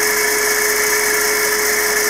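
Small 0.25 kW three-phase electric motor running on a variable frequency drive, coupled to a larger 6.5 kVA three-phase motor: a steady electric whine with one held tone and a high hiss.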